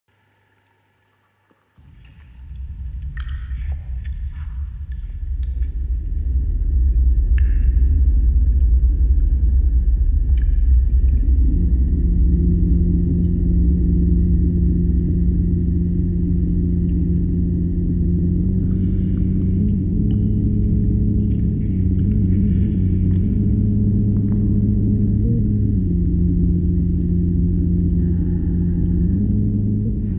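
Hydraulophone (water organ) played underwater: a deep rumble swells in after a couple of seconds, then low sustained organ-like notes hold and shift pitch every few seconds. A few faint high ringing touches sound in the first ten seconds.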